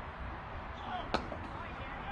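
One sharp knock a little past halfway, over steady background noise with faint voices.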